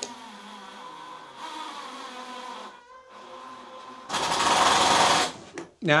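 Makita 18V cordless drill running with a steady motor whine as it bores a small pilot hole into a block of wood. About four seconds in comes a much louder, rougher stretch of drilling lasting just over a second.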